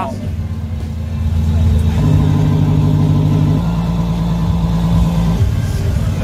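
Active exhaust sound system on a Mercedes-Benz G350d playing a synthesized engine note through speakers in the exhaust, switched between presets: a steady low drone that steps up in pitch about two seconds in, shifts again, and drops back near the end.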